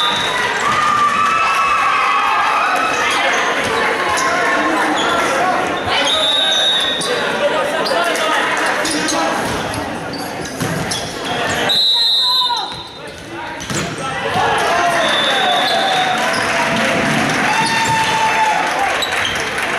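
Volleyball game in a gymnasium: players' shouts and ball impacts, echoing in the large hall. Several short high-pitched tones sound through it, one about a third of the way in, another around the middle, another near the end.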